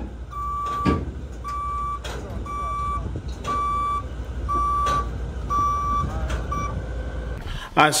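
Travel alarm of a tracked horizontal directional drill beeping about once a second, each beep a single steady tone, over a low engine rumble as the machine is moved by remote control on the trailer. The beeping stops near the end.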